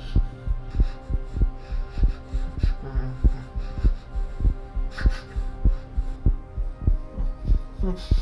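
Heartbeat sound effect in a horror film soundtrack: steady, paired low thumps over a sustained low drone, with a brief swell about five seconds in.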